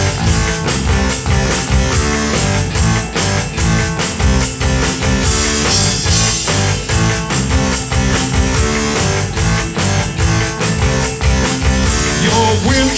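Live rock band playing an instrumental passage: electric guitar over a steady drum-kit beat, with no singing.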